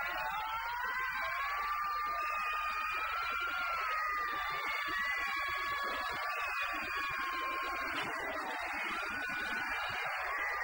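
Eerie electronic film-score tones: several high notes held at once, creeping slowly up in pitch over the first few seconds, then holding and wavering near the end.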